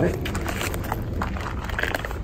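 Quiet handling noise of nylon awning fabric being moved, with a few faint clicks over a low steady background noise.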